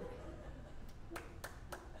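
A few scattered hand claps, about four sharp separate ones in under a second, with laughter breaking out at the very end.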